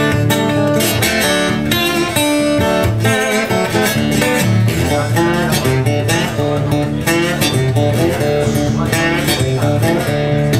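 Solo blues slide guitar playing a steady rhythmic figure, several notes sliding up or down into pitch.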